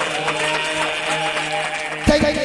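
Audience clapping along over the sustained closing notes of a song's music.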